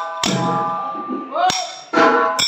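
Small hand cymbals (taala) struck three times, each stroke left ringing on, as the percussion comes to a stop.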